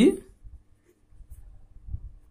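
Pen writing on paper: faint, irregular scratching of the pen as words are written by hand.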